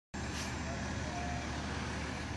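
Steady engine drone with a low hum and a noisy hiss over it, from fire trucks running their pumps to feed a hose and a water spray.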